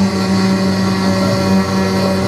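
Live improvised music: violin and trumpet playing over a steady low drone, with held notes layered above it and no beat.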